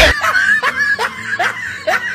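A cartoon character laughing in a high-pitched snicker: a quick, even run of short rising 'hee-hee' bursts, about four a second.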